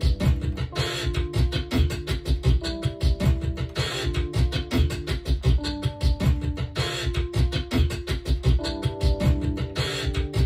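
Electronic music being produced in a DAW: a programmed beat with a busy low kick pattern and a burst of hiss about every three seconds, under held notes that change about once a second, played from a small MIDI keyboard controller.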